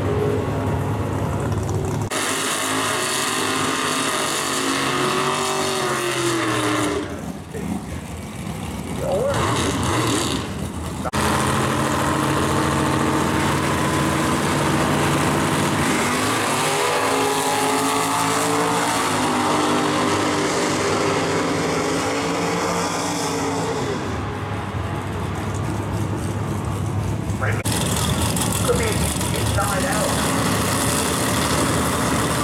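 Drag-racing muscle car engines running and being revved in the staging lanes, the engine note climbing and falling several times, with abrupt changes in the sound where clips are cut together.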